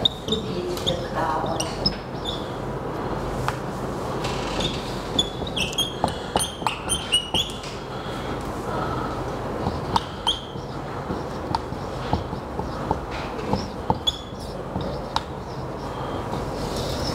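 Dry-erase marker squeaking and ticking on a whiteboard in short strokes as words are written, busiest about five to seven seconds in, over a steady low room hum.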